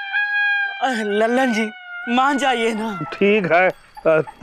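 A long, high-pitched held cry that slowly sinks in pitch, overlapped from about a second in by bursts of rapid, wavering vocal exclamations, 'arey arey arey'.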